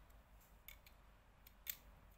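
Near silence with a few faint clicks of hard plastic Lego parts as a small Lego walker model is handled, its leg moved and the model set down on a tiled floor; the loudest click comes near the end.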